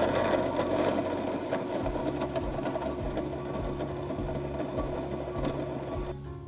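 Vitamix Quick & Quiet commercial blender running inside its sound enclosure on a preset program, with a steady motor hum. It is churning a thick frozen dragon fruit and pineapple smoothie-bowl mix.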